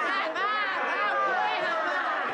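Several voices chattering over one another, high and swooping in pitch, in lively overlapping talk with no clear words.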